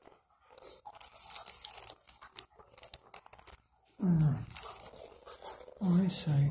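Dog chewing dry kibble from a hand, a run of crisp crunches and clicks starting about half a second in. A short, low vocal sound, the loudest thing here, comes about four seconds in.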